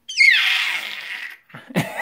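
A baby's high-pitched screech that falls in pitch and trails off into a raspy, breathy growl over about a second, the kind of noise that sounds like a little dinosaur.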